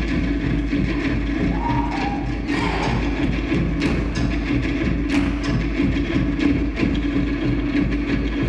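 Music with percussion, with a few sharper knock-like strikes.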